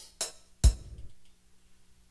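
Akai XR20 drum machine playing a few drum hits from one of its kits, the loudest about two-thirds of a second in, then stopping about a second in.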